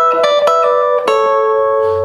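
Electric guitar, a Fender Telecaster, played with hybrid picking: a bass note and plucked double-stop chord stabs of an E to E7 lick, with a hammer-on and pull back off, each struck note ringing on. New plucks come at the start, about half a second in and about a second in.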